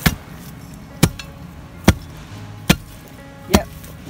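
Heavy 16-pound steel tamping bar driven blade-first into the ground, chopping into a tree root in the soil: five sharp strikes a little under a second apart.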